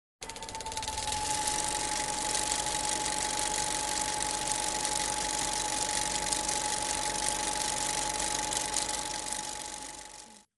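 Steady rushing noise of a fan running, with a steady mid-pitched whine, fading out near the end.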